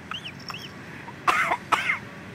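A bird gives a few short chirps that rise and fall in pitch. Then, about a second and a half in, come two loud, raspy coughs close together.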